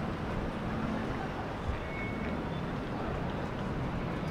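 Steady outdoor city and wind rumble, with the low drone of a canal tour boat's engine that fades out about a second in.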